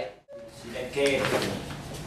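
Speech: a man talking at a table microphone, starting about a second in after a brief break in the sound where the video cuts.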